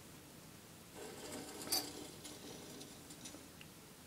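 Faint light clicks and taps of a small sterling silver sculpture being turned by hand on a wooden workbench, with one sharper click near the middle.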